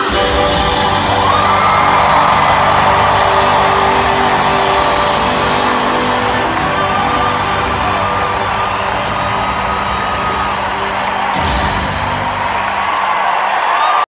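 Live rock band with piano playing in a stadium, heard from high in the stands, holding long sustained notes as the song draws to a close, while the crowd whoops and cheers. A low thump comes about two and a half seconds before the end.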